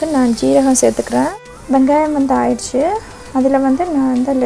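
A woman talking in a steady stream of speech, broken by a sudden brief dropout about a second and a half in.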